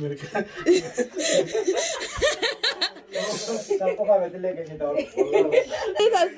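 People's voices talking and chuckling, with a short hiss about three seconds in.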